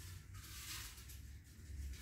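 Faint rustling of paper raffle tickets being stirred by hand inside a glass jar, over a low steady room hum.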